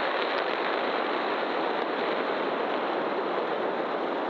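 Super Heavy Booster 7's Raptor engines running in a static fire, 31 of its 33 engines lit. The result is a loud, steady, even rushing noise with no pitch and little deep bass.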